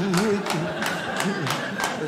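A man laughing hard in short, wavering bouts, with sharp claps or slaps falling about three times a second.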